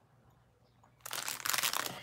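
Plastic wrapping crinkling as it is handled. It starts about a second in.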